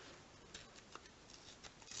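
Near silence with a few faint clicks and rustles from fingers handling a shiny sticker packet before tearing it open.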